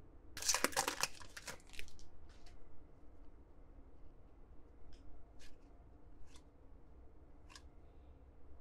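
Trading cards and pack wrapper handled in the hands: a quick flurry of rustling and card-sliding in the first couple of seconds, then a few single short slides or snaps of cardstock spaced out over the rest of the time.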